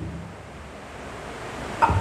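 A pause in a man's amplified speech, filled with a steady hiss and low hum of room noise through the sound system. His voice trails off at the very start and comes back in near the end.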